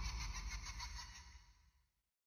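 The fading tail of a cinematic trailer hit: a deep low rumble with quick mechanical ticking over it, dying away to nothing a little before the end.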